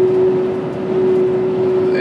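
Cabin noise inside a van driving at highway speed: a steady rush of road and engine noise with a constant mid-pitched hum running through it.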